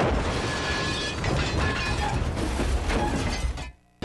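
Car crash sound effect: a loud, continuous crunching and shattering of metal and glass that cuts off suddenly near the end.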